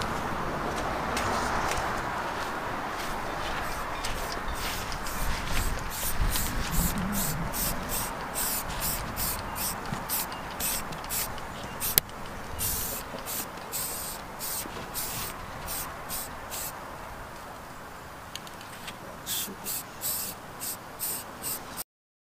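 Aerosol spray-paint can hissing in quick short bursts, about two to three a second, with one sharp click about halfway through.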